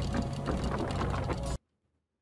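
Clockwork gears of a wooden mechanical wheelchair turning: dense rapid ratcheting clicks over a steady low hum, cutting off abruptly about one and a half seconds in.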